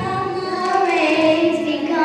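A group of children singing together in long held notes, the melody stepping down about a second in.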